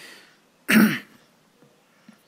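A man clearing his throat once, a short harsh burst just under a second in.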